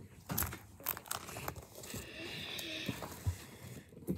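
Plastic pocket pages of a trading-card binder crinkling and rustling as they are turned, with scattered light clicks and taps.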